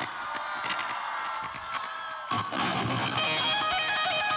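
Electric guitar played live through a stage PA, holding sustained notes, then coming in fuller and louder a little past halfway.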